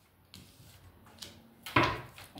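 Tarot cards being handled and laid down on a cloth mat: a few faint soft clicks, then one sharp knock near the end.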